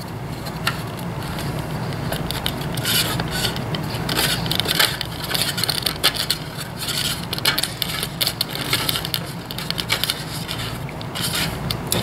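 Hands handling a wooden mousetrap car while loading it: the CD wheels are turned backwards to wind the string onto the axle, giving a busy run of small scrapes, rubs and clicks from wood, string and plastic.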